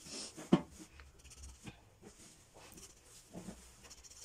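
Round metal cutter pressed through rolled dough and knocking on a marble worktop: one sharp click about half a second in, then a few fainter knocks and soft scrapes.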